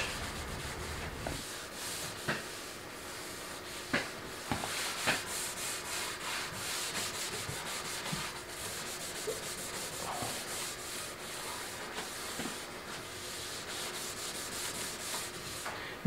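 Cloth rubbing boiled linseed oil into stripped bare wood of a piano part: a steady hiss of repeated back-and-forth strokes, with a few light knocks about four to five seconds in.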